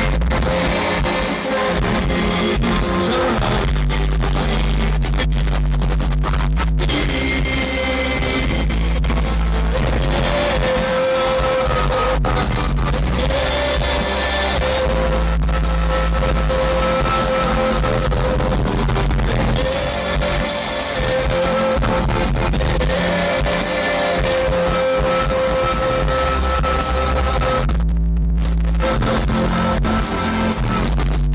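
Live rock band playing on stage, with electric guitars and drums, heard loud from the crowd. The music breaks off for a moment about two seconds before the end, then carries on.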